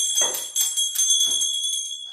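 Small metal bells ringing repeatedly, their high ringing tones held on between the short strikes, about two or three strikes a second.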